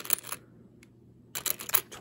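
Quarters clicking against each other as fingers pick one out of a pile of coins: a few light clicks at the start, a short pause, then a quick run of clicks in the last half second or so.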